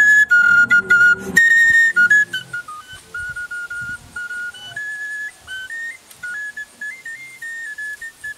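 Background film music: a high flute-like melody moving in stepped notes, with fuller accompaniment for about the first two seconds, after which it continues more quietly as a lone line.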